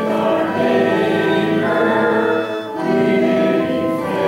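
Congregation singing a hymn in slow, held notes that change about once a second.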